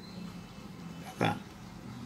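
A man's brief grunt-like throat sound about a second in, over a faint steady hum.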